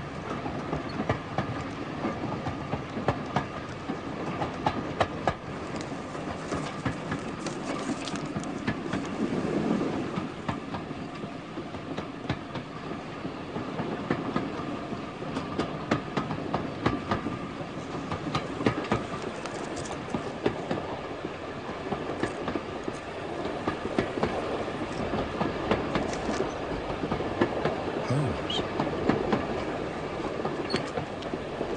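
Railway carriage heard from inside the compartment: a steady rumble of the moving train with frequent clicks of the wheels over the rail joints.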